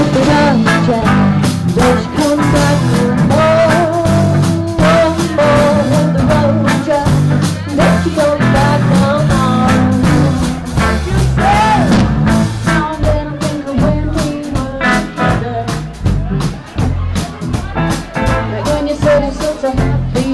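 Live soul and blues-rock band playing loud: drum kit keeping a steady beat under upright bass and electric guitar, with a woman's voice singing over them.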